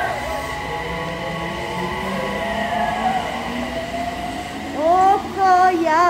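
Electric commuter train in an underground station, its motor whine holding several steady tones that slowly fall in pitch. Near the end a voice calls out over it.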